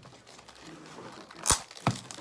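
Clear plastic wrap on a chocolate box being crinkled and torn off by hand, a soft rustle ending in two sharp snaps near the end.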